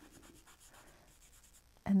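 Faint scratching of a nearly dry paintbrush scrubbed over a paper-covered wooden ornament (dry-brushing a highlight), with a spoken word near the end.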